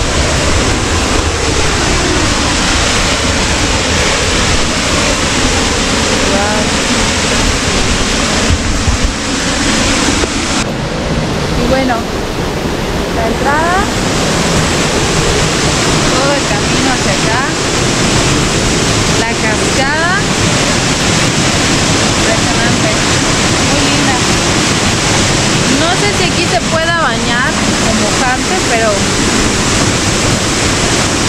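Small forest waterfall pouring into a pool and river: a loud, steady rush of falling water.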